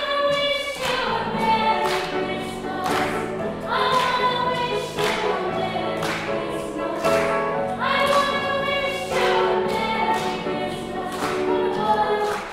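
A woman singing long held notes, with grand piano accompaniment underneath.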